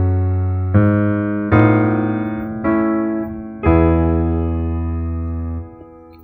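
Kurzweil Academy digital piano playing slow, sustained chords, a new chord struck about once a second; the last chord is held about two seconds and released near the end.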